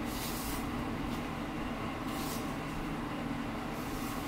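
Steady low room hum, with a few faint soft swishes of tarot cards being handled and slid across a cloth-covered table.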